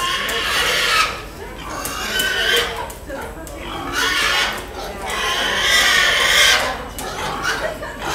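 Show pigs squealing and grunting several times, the loudest about six seconds in, over crowd chatter.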